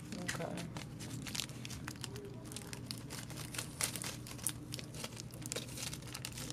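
Crinkling and rustling from the camera rubbing against blouse fabric, a dense run of small clicks and crackles.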